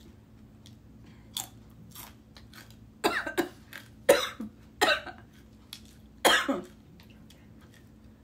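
A woman chewing the Paqui One Chip Challenge chip with small soft mouth clicks, then coughing sharply about five times in the second half as the extreme chilli heat catches her throat.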